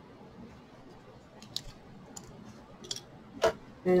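A few light clicks and taps of small craft tools handled on a tabletop, ending in one sharper click shortly before the end.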